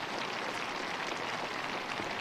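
Steady, even applause from a small crowd of spectators after a boundary.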